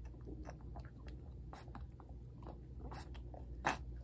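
Newborn Nigerian Dwarf goat kid sucking milk from a bottle nipple: irregular quick wet smacks and clicks as it drinks greedily.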